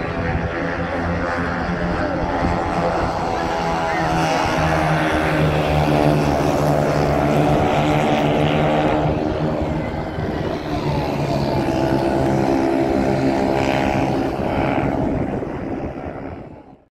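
Engines of mini-midget race cars running at speed around a dirt oval, a steady droning with pitch bending as they lap, loudest about halfway through.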